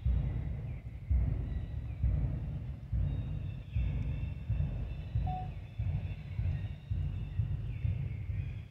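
Wind buffeting the microphone: a gusty low rumble that surges and drops about once a second. Faint high calls waver in the background, with one short high note about five seconds in.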